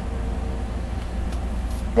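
Steady low background hum in the room, with no speech.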